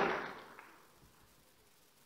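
The last of a woman's voice fading out in the hall, then near silence.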